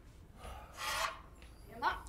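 A rasping scrape lasting about half a second, followed near the end by a short rising squeak.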